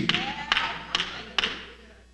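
Four light knocks, evenly about half a second apart, over the fading echo of a man's voice in a reverberant hall.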